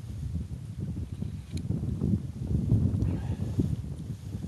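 Wind buffeting the microphone: an uneven low rumble that rises and falls through the whole stretch.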